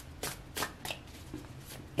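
A deck of cards being shuffled by hand, with a few short crisp snaps of the cards in the first second or so.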